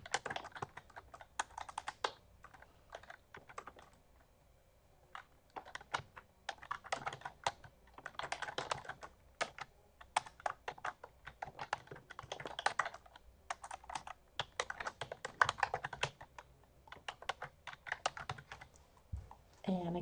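Typing on a computer keyboard in bursts of quick keystrokes with short pauses between words.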